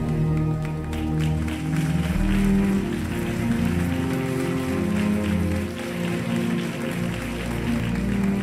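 Live worship music between sung lines, with sustained chords over a low bass. The audience applauds over it from about a second in.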